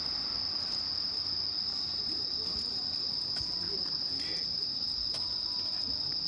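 Steady, high-pitched chirring of night insects, one unbroken chorus with no change in level.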